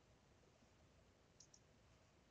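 Near silence, with two faint quick clicks about one and a half seconds in, from the lecture slide being advanced.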